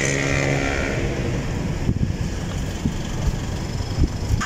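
A motor vehicle's engine running close by, its steady hum ending about half a second in, over a continuous rumble of traffic noise.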